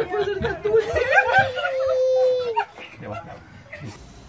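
A dog howling in one long held note over excited voices, the howl ending a little past halfway.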